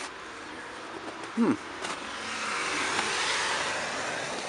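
A road vehicle passing by: a rush of tyre and engine noise that swells through the second half and eases off near the end.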